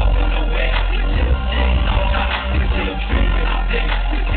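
Loud live concert music from a stage sound system, recorded from the crowd, with a heavy bass line that eases off briefly about a second in and again near the end.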